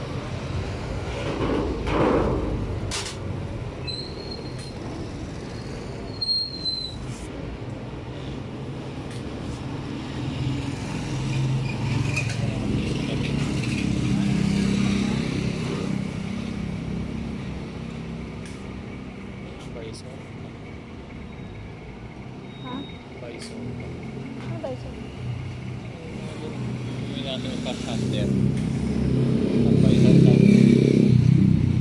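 Indistinct voices and a motor vehicle's engine that swells and fades twice, with a few sharp metallic clicks.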